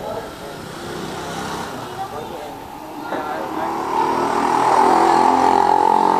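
A motor vehicle's engine drawing closer, growing louder from about three seconds in and loudest near the end.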